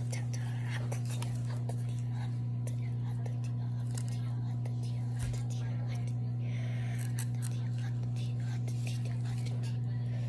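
Soft rustling and small ticks of a warm flour tortilla being torn apart by hand, over a steady low hum that runs throughout.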